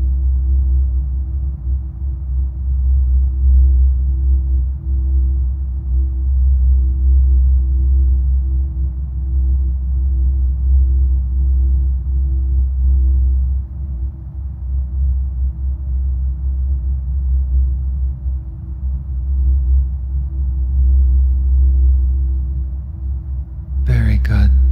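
Ambient drone of a hypnosis backing track: a deep, wavering low rumble with one steady tone held above it, typical of a binaural-beat bed.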